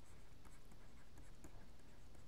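Faint scratches and ticks of a stylus writing a word by hand on a tablet, over a steady low hum.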